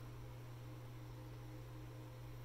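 Quiet, steady low hum with faint hiss; no distinct event.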